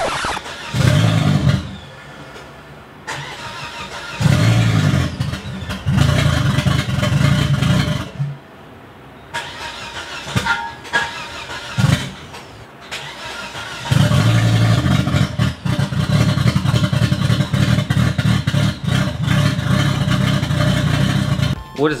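A 2000 Volvo V70 XC's five-cylinder engine running, its sound swelling and dropping back several times, then holding loud and steady for the last eight seconds.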